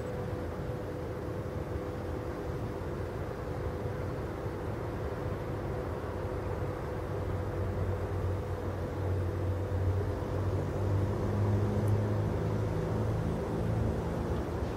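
Diesel engine drone of an approaching ALn 663 diesel railcar, growing louder over the second half, over a steady hum.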